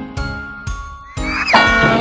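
Cartoon background music with a steady beat. About a second and a half in, a sound effect plays: a quick rising whistle that breaks into a bright jingling shimmer.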